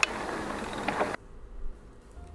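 Ride noise from a hardtail mountain bike on a dirt forest trail: a steady rushing hiss of wind and tyres with a faint rattle. It cuts off suddenly about a second in, leaving only a low hum.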